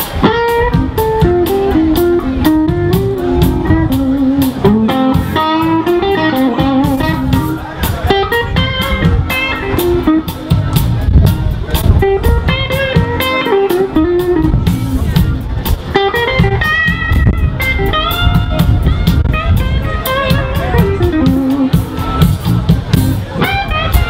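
Live electric blues band playing, with a bending electric guitar lead line over bass and a steady drum kit beat.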